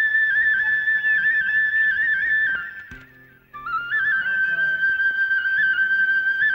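Film background music: a single high, ornamented flute melody that breaks off a little before halfway and comes back about a second later, climbing back up to its high note.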